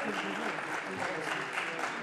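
Members of parliament applauding in the chamber, a dense patter of many hands clapping, with several voices talking over it.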